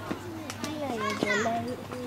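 Young children's voices shouting and calling out over one another during a football game, loudest about halfway through, with a couple of short sharp knocks.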